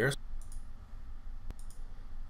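A single sharp computer mouse click about one and a half seconds in, over a low steady hum.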